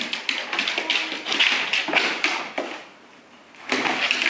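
A boxer's claws and paws tapping and scrabbling rapidly on a hardwood floor as the dog darts and pounces. The clatter drops away for about a second near the end, then starts up again.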